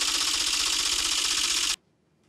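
Typewriter-style clacking sound effect, a rapid run of mechanical key clicks as an on-screen caption types out, stopping abruptly just before the end.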